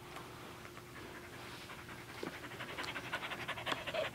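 Small dog panting rapidly, growing louder over the last second or so as it comes close.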